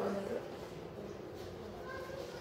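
Quiet classroom room tone, with a short faint high-pitched sound near the end.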